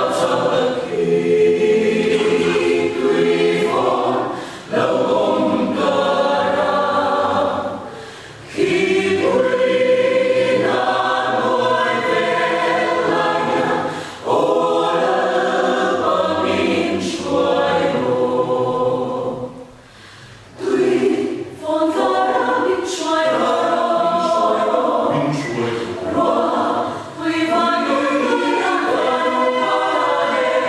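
Mixed choir of women's and men's voices singing a hymn in Mizo, in sustained phrases broken by short breaths, the longest near 8 and 20 seconds in.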